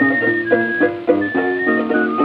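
Early-20th-century recording of instrumental string music: plucked strings play quickly changing chords under a high melody of held notes.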